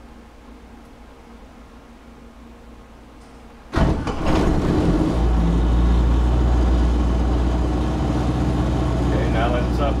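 A Kubota V3800 four-cylinder diesel driving a generator starts after a quiet glow-plug preheat. About four seconds in it fires abruptly, catches within a second or so and settles into a steady run at about 1800 RPM.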